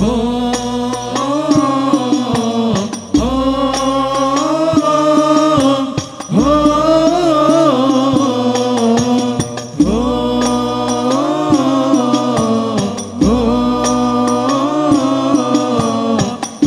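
A group of male voices singing Islamic sholawat in unison in the Al-Banjari hadroh style, in slow, long, melismatic phrases of about three seconds each, with brief breaths between them. Frame drums (terbang) accompany them, with a deep drum stroke at the start of each phrase.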